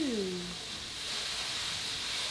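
A steady hiss, with a woman's short 'ooh' that rises and falls in pitch at the start.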